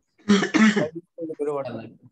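A man clearing his throat with a loud, rough burst a quarter-second in, followed by a shorter voiced sound.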